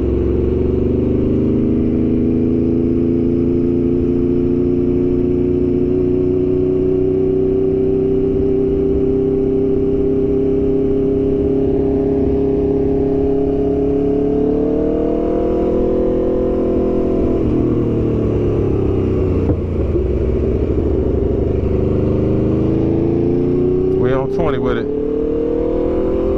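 Aprilia RSV4 Factory's V4 engine running under way at steady revs, with wind noise over the microphone. The revs rise a little over halfway through, drop back a few seconds later, then climb steadily toward the end.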